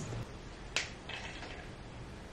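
A single sharp click, then a brief faint sip through a straw from a plastic tumbler.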